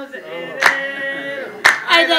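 Voices singing a praise song without instruments, kept in time by a sharp hand clap about once a second.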